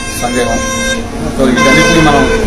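A man talking, over a steady pitched tone with several even lines that gets louder about one and a half seconds in.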